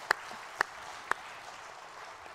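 Audience applauding. A few louder claps close to the microphone sound about twice a second and stop a little past halfway.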